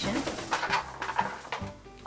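A pet parrot flying close, its wings fluttering.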